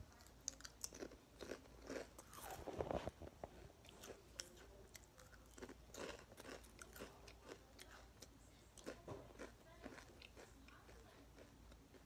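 Crunchy snack being bitten and chewed close to the microphone: irregular crisp crunches, with a louder run of crunching about two to three seconds in.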